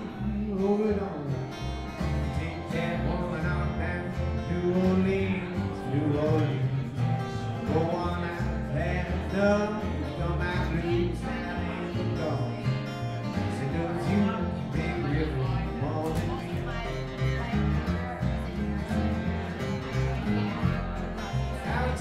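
A live country band playing, with guitar over a steady beat and a singing voice.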